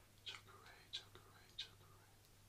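A man whispering softly: a few breathy syllables with three short hissing peaks, over a faint steady low hum.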